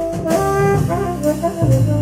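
Tenor saxophone soloing in a quick run of short notes, with a double bass plucking low notes underneath, in a small live jazz combo.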